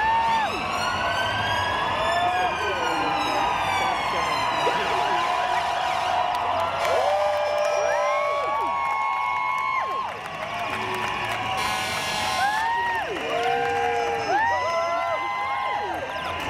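Emergency sirens sounding amid a crowd. One siren rises and then falls in pitch over the first few seconds, then many short overlapping tones swoop up, hold and drop away at different pitches.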